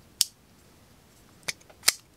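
Three sharp metal clicks from an assisted-opening liner-lock folding knife being worked open: one about a quarter second in, then two close together near the end.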